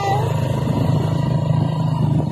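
Small motorcycle engine running steadily while riding, a low even hum with road and wind noise.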